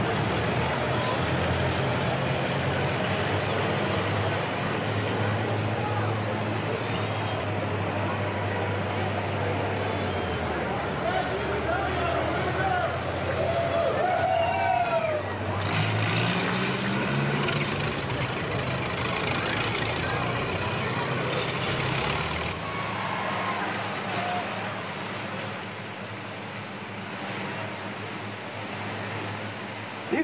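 Model T Ford four-cylinder engines running, with crowd voices behind. An engine revs up about twelve seconds in. After about twenty-two seconds the engine sound falls away, leaving quieter background noise.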